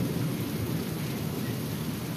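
Heavy rain falling steadily, an even hiss of rain on the ground and surfaces.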